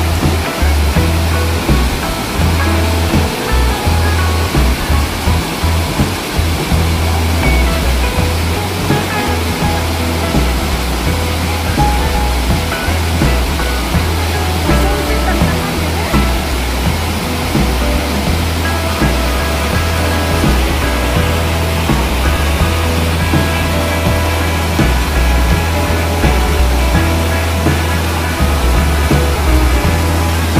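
Waterfall rushing steadily over limestone ledges below a small concrete dam, a loud even roar with a deep rumble, with music playing over it.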